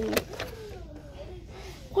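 A faint, indistinct voice with wavering pitch over low steady background noise, between louder spoken questions.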